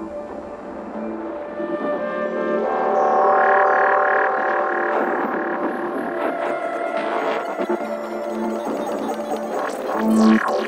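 Beatless intro of a dark progressive psytrance track: layered sustained electronic drones and pads, swelling louder about three seconds in.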